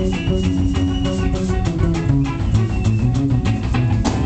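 Live rock band playing an instrumental passage: electric bass guitar, electric guitar and drum kit together, with sustained guitar notes over a steady drumbeat.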